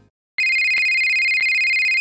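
A telephone ringing: a steady electronic two-tone warbling ring that starts abruptly about half a second in and holds at one level.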